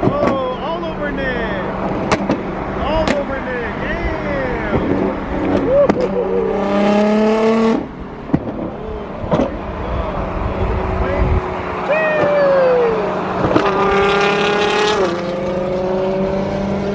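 Sports car engines pulling hard at freeway speed. The engine notes climb steadily and drop off sharply at gear changes about 8 and 15 seconds in, with shorter rises and falls of revving and scattered sharp cracks between.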